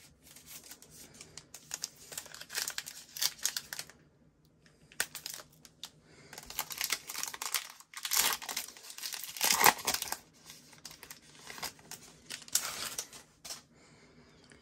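Foil wrapper of a Panini Prizm football trading-card pack crinkling as it is handled and then torn open, in repeated crackly bursts with a short pause about four seconds in; the loudest tearing comes about ten seconds in.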